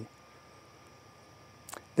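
A pause with a faint, steady, high-pitched drone of insects, and a single short click near the end.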